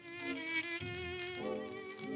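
Dance orchestra playing a slow English waltz on a 1934 shellac record: a violin melody with wide vibrato over held chords.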